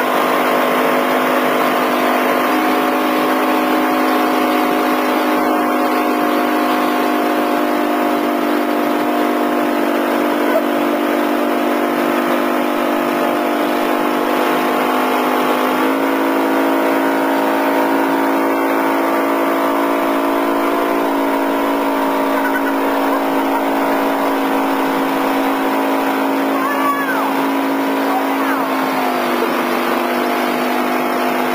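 Motorboat engine running steadily under load, its pitch stepping up a couple of seconds in and again about halfway, then dropping near the end, over a steady rushing hiss.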